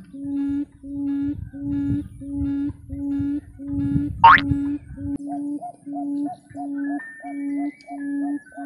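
A quail call, a low hoot repeated steadily about one and a half times a second, used as a lure to draw wild quail to a set trap. About four seconds in, a sharp rising squeal sweeps up once, louder than the calls.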